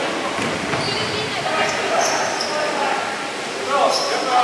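Dodgeballs bouncing on a wooden sports-hall floor, with short sneaker squeaks and players' voices echoing around the large hall.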